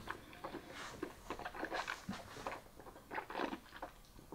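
Faint wet mouth sounds of whisky being sipped from a glass and worked around the mouth: soft, irregular little clicks and smacks.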